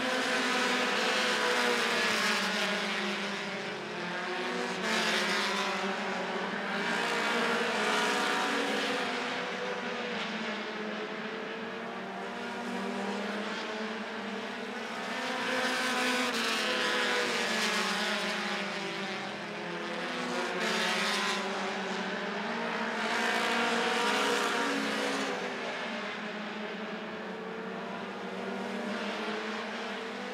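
A field of short-track stock cars running laps on a small paved oval. The engine sound swells and fades every few seconds as the cars come past and go away around the track.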